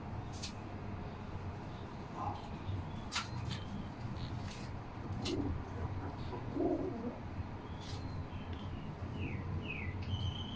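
Domestic pigeon cooing, a few short low coos around five and seven seconds in, with a few sharp clicks and faint high chirps over a steady low hum.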